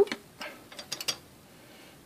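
A handful of light, sharp metallic clicks and ticks, bunched between about half a second and a second in, from the steel melting spoon knocking against the aluminum mold as molten zinc is poured in.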